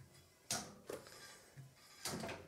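Fat-tyre front wheel of an e-bike spun by hand, freewheeling: a faint whir that rises sharply about half a second in and fades, followed by a couple of fainter soft sounds.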